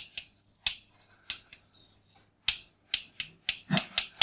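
Chalk writing on a blackboard: a quick, irregular run of sharp taps and short scrapes as letters are chalked up.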